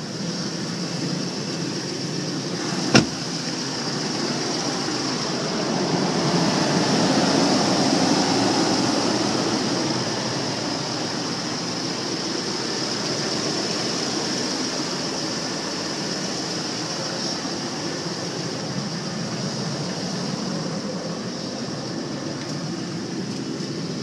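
Chevrolet Silverado 2500HD pickup engine idling steadily after a remote start, growing louder for a few seconds in the middle as the camera passes along the truck. A single sharp knock sounds about three seconds in.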